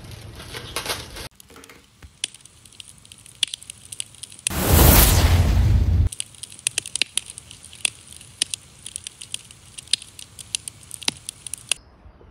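Channel logo intro sound effect: a sudden loud rushing burst lasting about a second and a half, followed by a run of scattered sharp crackles and clicks.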